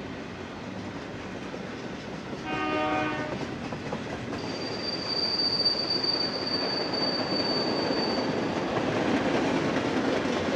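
BNSF intermodal freight train rolling past, the rumble and clatter of its container and trailer cars growing louder toward the end. A short horn blast sounds about two and a half seconds in, and a high, steady wheel squeal starts about four and a half seconds in and lasts about four seconds.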